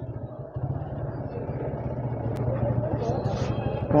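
Motorcycle engine idling with a steady low, evenly pulsing hum.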